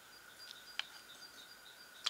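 Quiet room tone with faint, short, high chirps in the background, like distant birds, and a single light click a little under a second in.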